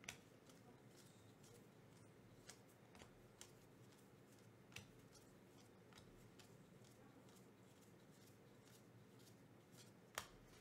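Very faint, scattered clicks and snaps of 2024 Topps Series 2 baseball cards being flicked off a hand-held stack one at a time, with room tone between them.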